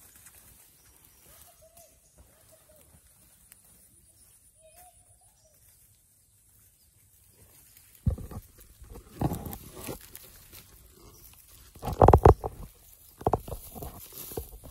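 Quiet background with two faint, wavering animal calls, then from about halfway loud rustling, scrapes and knocks as the handheld camera is moved about in dry grass. The loudest bump comes about two seconds before the end.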